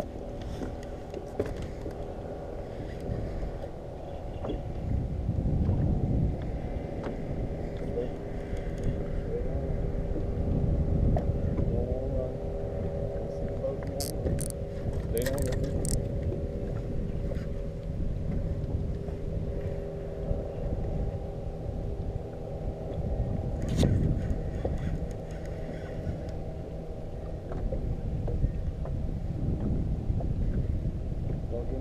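Boat motor running steadily with a constant multi-tone hum, over a low rumble that swells a few times. A few sharp clicks come about halfway through.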